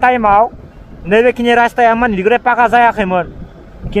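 A person's voice in short phrases with drawn-out, wavering notes, with pauses about half a second in and near the end, over the low rumble of a motor scooter riding in traffic.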